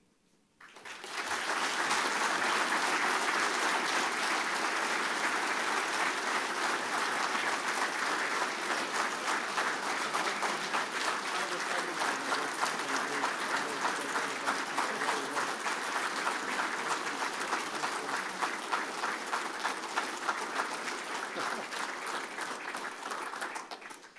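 Large audience applauding, starting about a second in, holding steady for some twenty seconds, then dying away near the end.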